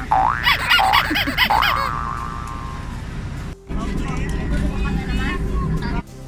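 A voice in a playful sing-song for the first two seconds. After a sudden cut, a steady low hum of a bus cabin with its engine running, with faint passenger chatter.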